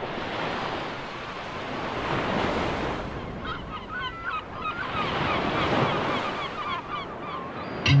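Ocean surf, swelling and ebbing in waves, with birds calling in short chirps from about three and a half seconds in. An electric guitar comes in right at the end.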